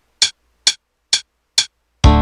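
Four short, evenly spaced count-in clicks, about two a second, from Jammer Pro 6 music software playback: a one-bar count-in ahead of the composed song.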